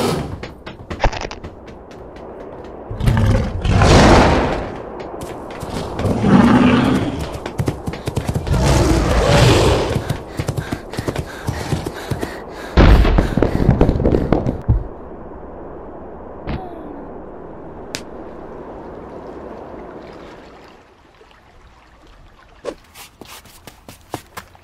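Sound effects for a cartoon monster's attack: a run of loud crashes and thuds, one about every three seconds, in the first half. They give way to a quieter steady background noise that drops lower near the end, with a few faint clicks.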